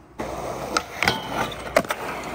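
Skateboard wheels rolling on concrete during a nose grind, with a few sharp clacks of the board, about a second in and again near the end.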